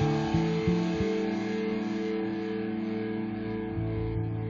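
Rock band's electric guitar and bass: a short run of quick low notes in the first second, then a chord held and ringing while it slowly fades.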